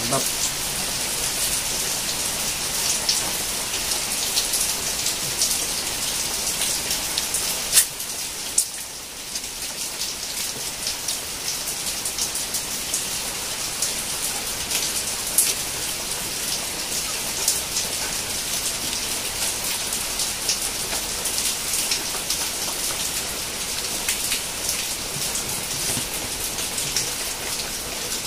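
Steady rain falling, with scattered sharper drops ticking through it.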